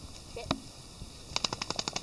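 A wet dog shaking itself off: a quick rattle of about a dozen sharp flaps in under a second, starting a little past the middle.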